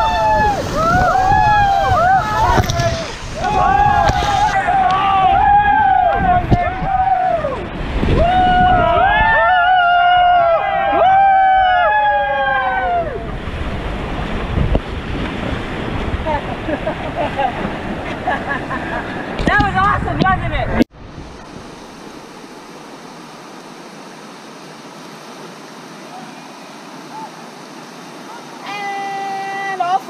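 Rafters whooping and yelling in long, drawn-out calls over the loud rush of whitewater rapids. The rushing water carries on alone for a while, then a sudden cut about two-thirds of the way through drops it to a quieter, steady flow of river water.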